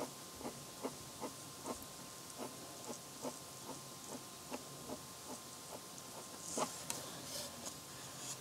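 Pencil making short, quick strokes on paper, about two or three a second, faint and even. About six and a half seconds in comes a brief, louder scratchy rustle.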